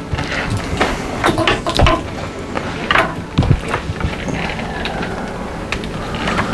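Cables and a plastic defibrillator connector being picked up and handled, giving irregular clicks, knocks and rustles.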